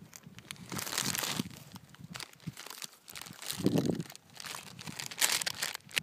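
Rustling and crinkling handling noise close to the microphone, in two spells about a second in and again about five seconds in, with a short low muffled bump a little before four seconds.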